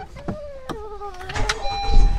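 Honda CR-V being started with its push-button, the engine catching and running with a low rumble from about one and a half seconds in.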